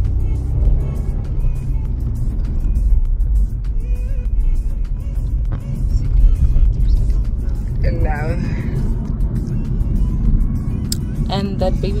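Inside a moving car's cabin: a steady low rumble of engine and road noise.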